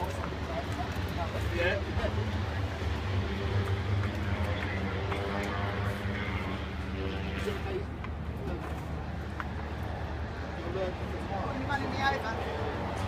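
Indistinct voices talking over a steady low mechanical drone.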